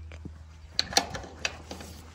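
Footsteps on a concrete walkway, a few light taps about half a second apart, over a low steady hum.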